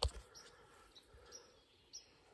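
A short knock of the phone being handled, then quiet woodland ambience with a few faint, short bird chirps.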